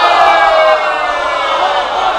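A crowd of men's voices calling out together in a dense, wavering, sustained chorus: an audience responding aloud to a recited couplet.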